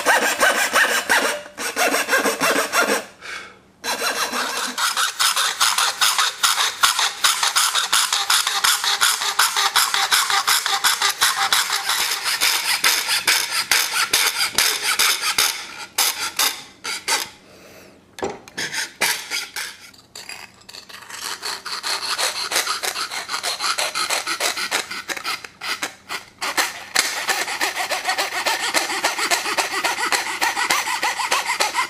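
Jeweler's saw with a very fine blade cutting copper-clad circuit board: rapid back-and-forth strokes. There is a short break about three seconds in, and halting stop-and-start strokes in the middle.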